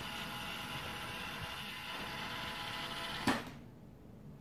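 Roomba's drive motors running steadily as the robot rolls across a wooden floor. About three seconds in, its bumper knocks into a cardboard box and the motors cut off right after: the bump sensor has tripped the program's stop.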